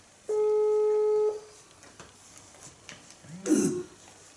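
Telephone ringback tone: a single steady one-second ring, heard as the outgoing call rings unanswered. Near the end comes a brief, louder vocal noise from the caller.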